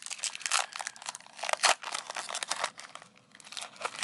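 Foil trading-card pack wrapper torn open and crinkled by hand: a dense run of crackles that thins out near the end.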